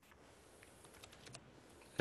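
Faint computer keyboard typing: a short run of light key clicks in the first half, and a last click a little later.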